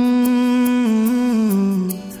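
A hummed vocal melody opening a Bollywood romantic song, with soft backing music and light regular high ticks. The held note steps down to a lower pitch about one and a half seconds in.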